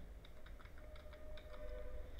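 Faint computer keyboard typing: a run of soft, irregular keystrokes over a steady low hum.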